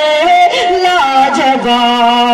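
A man singing a naat, the Urdu devotional poem, drawing the words out in long held notes that slide and step between pitches.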